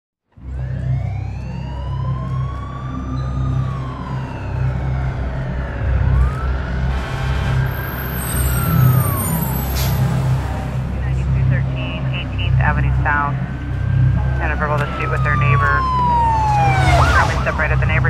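Several emergency-vehicle sirens wailing at once in slow, overlapping rising-and-falling glides, over a steady low engine rumble. In the second half, faster warbling yelps join in.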